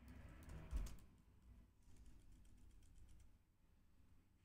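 Faint computer keyboard typing, scattered keystrokes with a louder low thump just under a second in.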